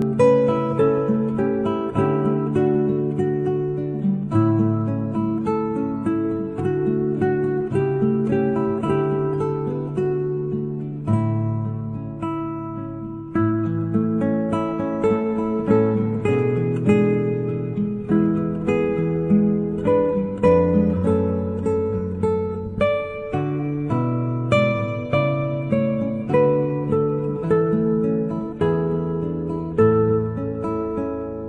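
Background music on acoustic guitar: a steady run of plucked notes.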